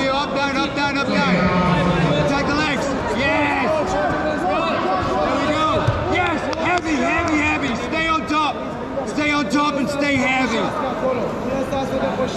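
Several people talking and shouting at once, the overlapping voices of coaches and spectators echoing in a sports hall, with a single thump about six seconds in.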